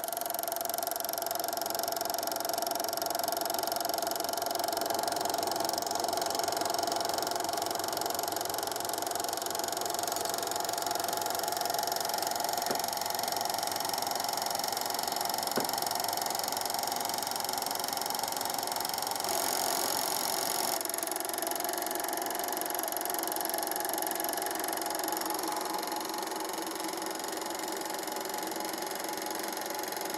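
Eumig 8 mm film projector running: a steady mechanical whirr of its motor, cooling fan and film drive, with a steady whine over it. The sound changes character about two-thirds of the way through.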